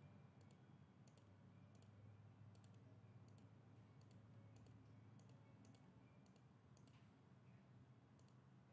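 Near silence with about a dozen faint, irregularly spaced computer mouse clicks over a faint steady low hum.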